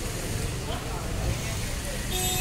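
Steady low rumble of road and engine noise from a car on the move.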